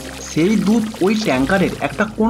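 Narration in Bengali over milk being poured from a large can into a tanker.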